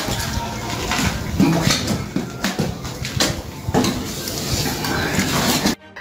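Wet cement mix being scooped and worked by hand in a wheelbarrow: scraping and clattering with a number of sharp knocks scattered through. The sound cuts off abruptly near the end.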